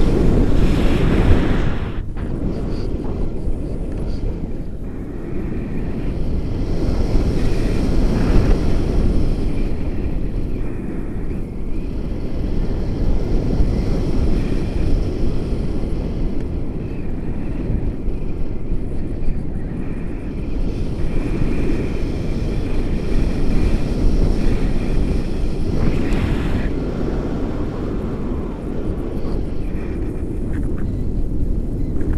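Airflow buffeting an action camera's microphone in paraglider flight: a loud, steady rush that swells and eases several times.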